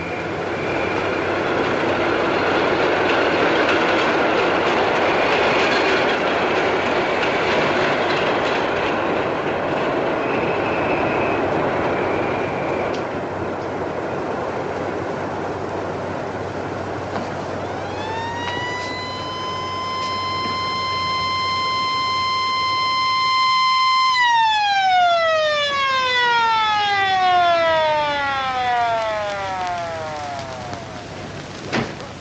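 A steady rushing noise fills the first dozen seconds. Then a police car's motor-driven siren winds up to a steady wail, holds for about six seconds, and winds down with slowly falling pitch.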